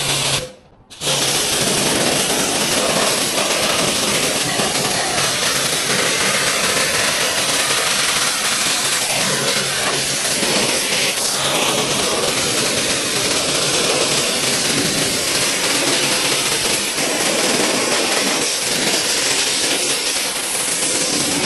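Pressure washer spraying a steady jet of water from an MP5-shaped spray gun onto a car's body and wheels, over the hum of the washer's pump. A few short trigger bursts and a brief stop come first, then the spray runs unbroken from about a second in.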